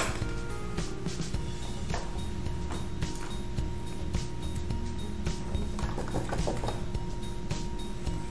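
Soft background music with steady held notes, with a few faint light clicks of brushes being picked up and handled on the table.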